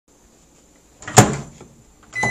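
A door shutting with one sharp clack about a second in, followed by a short fading tail and a faint click.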